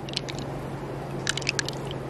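Wet squishing and short clicks of fingers working through soft freshwater mussel flesh to pick out pearls, a few clicks just after the start and a quick run of them from about one and a half seconds in, over a steady low hum.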